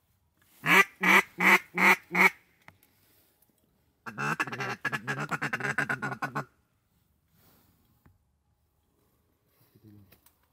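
Mallard duck call blown close by: a string of five loud quacks, then about two seconds later a long, rapid chatter of quick notes.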